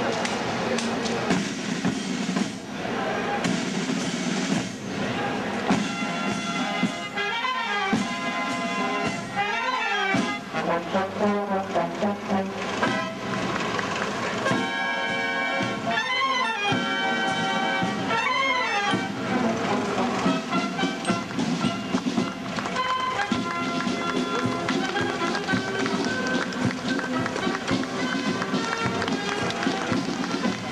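A military brass band with side drums playing a tune as it marches.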